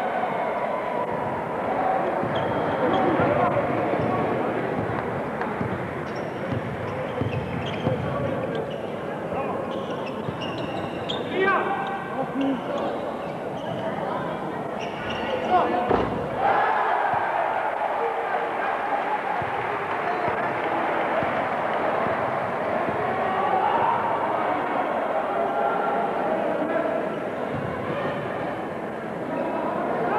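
A basketball bouncing on the court during a game, under continuous talking, with one sharp impact about 16 seconds in.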